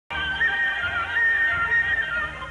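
Opening theme music of a TV programme: a high melody line moving between held, slightly wavering notes over a low sustained accompaniment.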